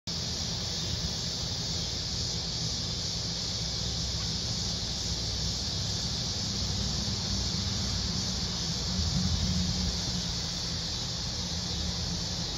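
Steady outdoor background noise: a continuous high-pitched hiss over a low, unsteady rumble, with a slight swell in the rumble about nine seconds in and no distinct event.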